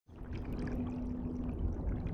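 Low water ambience, a murky rumbling wash with a faint steady hum, fading in at the start.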